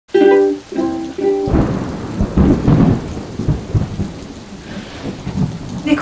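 A thunderstorm: thunder rumbling in uneven surges over steady rain, starting about a second and a half in, after three short pitched notes.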